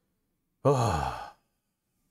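A man's drawn-out, sighing hesitation sound, "eo...", falling in pitch, lasting under a second.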